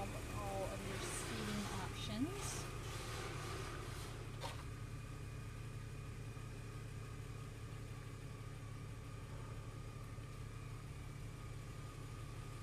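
Steady low mechanical hum with faint steady high tones over it, and a single sharp click about four and a half seconds in.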